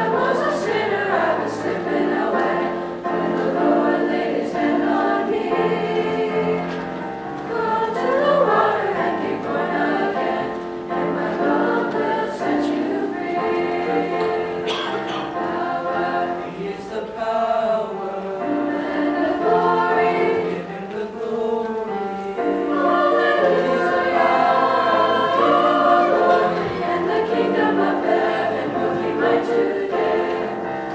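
A mixed choir of young teenage boys and girls singing a song together.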